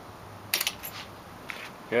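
A quick cluster of small sharp clicks and rattles about half a second in, and one lighter click near the end, from a hand picking up and handling a small automotive time-delay relay and its wires, over a low steady background hiss.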